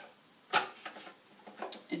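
Hard plastic clicks and taps from a Maison à vivre KS006 vegetable spiralizer as a half cucumber is pushed into place on it: one sharp click about half a second in, then a few lighter ticks.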